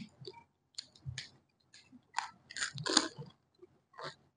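Close-up chewing and crunching of pani puri: crisp puri shells breaking in the mouth in short, irregular crunches, the loudest about three seconds in.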